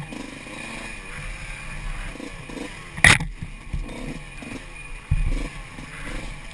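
Wind rush and rattling from a camera mounted on a bike riding fast down dirt singletrack, the tyres rumbling over the rough trail. A sharp knock comes about three seconds in and another thump just after five seconds, as the bike hits bumps.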